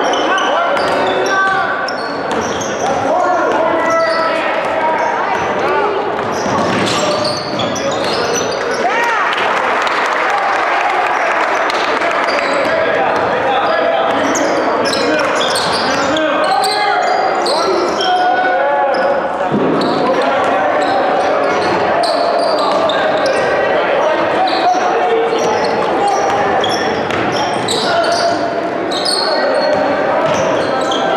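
Many overlapping voices chattering in an echoing school gym, with basketballs being bounced on the hardwood floor now and then.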